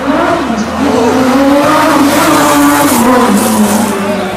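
A classic car driving flat out past the kerb on a sprint course, its engine note rising as it comes on and then falling away as it passes, loudest about two to three seconds in.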